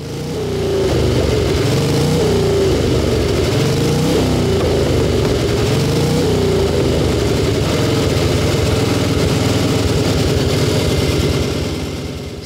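Harley-Davidson 750 cc high-compression overhead-valve V-twin hill-climb racer running through four open exhaust pipes, the revs rising and falling repeatedly as the throttle is blipped.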